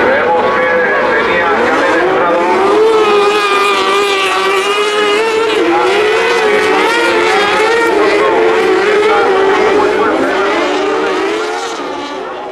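Several kartcross buggies racing, their high-revving 600 cc motorcycle engines rising and falling in pitch through gear changes and corners. The sound fades out near the end.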